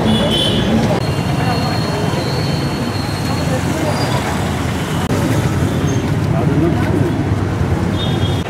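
Street noise: a steady rumble of road traffic mixed with people talking nearby.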